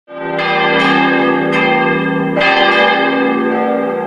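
Church bells ringing: four strikes in the first two and a half seconds, each ringing on and overlapping the next.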